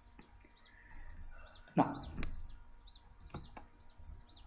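Small birds chirping in the background, a steady run of short, high, falling chirps several times a second. A few light clicks are heard along with them.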